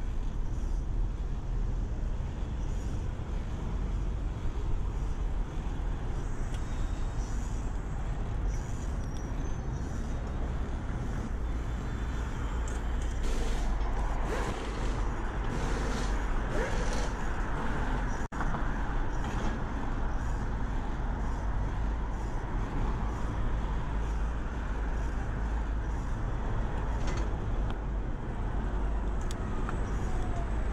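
Steady road traffic noise of cars, scooters and buses passing on a multi-lane road, heard from a bicycle riding in the roadside bike lane, over a constant low rumble. The noise swells for several seconds near the middle.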